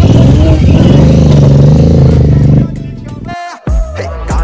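Mercedes-AMG CLA 45's turbocharged four-cylinder revved hard, very loud, its pitch climbing and then holding before cutting off abruptly near three seconds in.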